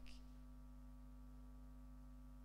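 Near silence: room tone with a steady low electrical hum.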